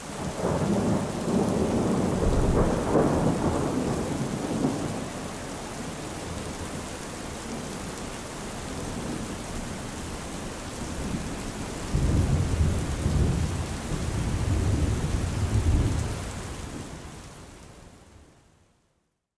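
Thunderstorm: steady rain with a long roll of thunder at the start and another about twelve seconds in, fading out near the end.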